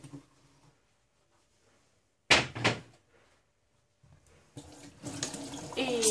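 Two sharp knocks close together in the middle, then a tap turned on about four and a half seconds in, water running into the sink and getting louder.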